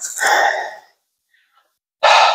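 A man's long, breathy exhale, like a sigh, that cuts off suddenly just under a second in.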